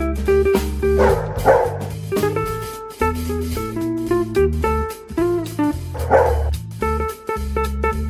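Background music with plucked guitar over a bass line, with a dog's bark sound effect heard twice: about a second in and again about six seconds in.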